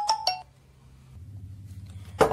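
A quick run of bright, bell-like mallet-percussion notes in a background tune, ending about half a second in, followed by a faint low hum.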